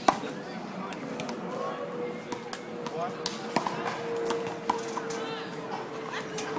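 Scattered sharp knocks and clicks, irregular and several a second at times, over faint background voices and a steady faint tone.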